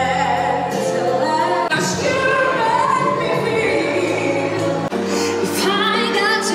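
Music with a singing voice, changing abruptly twice.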